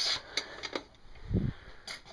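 Handling noise as a chrome guide light is picked up: a few light clicks and knocks, and a soft low thump about one and a half seconds in.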